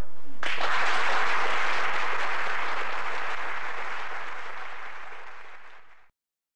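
Audience applause starting about half a second in, just after the final violin note dies away, then slowly fading and cutting off at the end.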